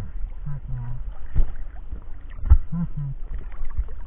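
Water sloshing around a camera bobbing at the surface, with a few dull knocks and two short pairs of low hummed grunts from the diver.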